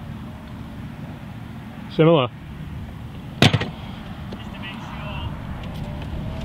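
Steady low outdoor rumble, with a short voiced exclamation about two seconds in and a single sharp knock about a second and a half later.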